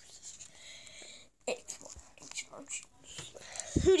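A soft whisper lasting about a second, then scattered light taps and rustles of cardboard booster boxes being handled.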